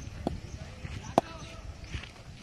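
A cricket bat knocking on the hard dirt pitch as it is set down by the batter's toe in the stance: one sharp, short knock about a second in, with a fainter one near the start.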